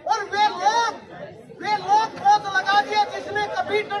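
Only speech: a man speaking into a handheld microphone, in two stretches with a short pause about a second in.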